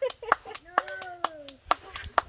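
Hands patting corn masa flat to shape tortillas: a quick, irregular run of soft slaps, several a second.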